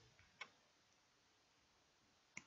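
Near silence, with a single faint click from the computer being used for text editing about half a second in.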